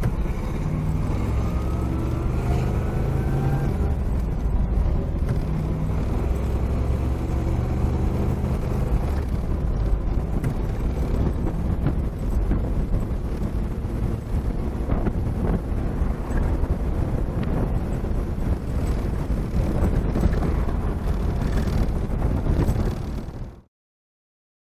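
1962 Corvette's numbers-matching 300 hp 327 cubic-inch V8 accelerating, its note rising in pitch over the first few seconds, then running on steadily as the car drives along. The sound cuts off suddenly near the end.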